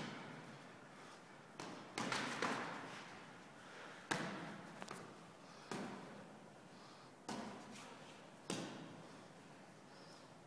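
Boxing gloves landing punches in sparring: about nine sharp slaps and thuds at irregular intervals, including a quick run of three about two seconds in. Each hit echoes and fades slowly in the large hall.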